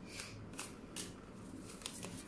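Tarot cards being handled, with about five short, soft card swishes and flicks.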